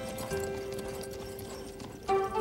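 Horse hooves clip-clopping on a dirt street, under background film music holding long, steady notes.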